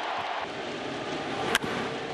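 Ballpark crowd noise, with a single sharp crack about one and a half seconds in, a bat hitting a pitched baseball.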